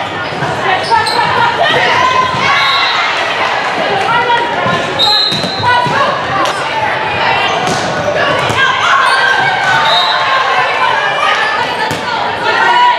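Volleyball rallies on an indoor court: the ball is struck and hits the floor several times. Players and spectators call out and shout over it, and the sound echoes around a large gym.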